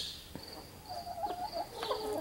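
Chickens making a soft, wavering low call about a second in and again near the end, over high, rapidly repeated chirping in the background.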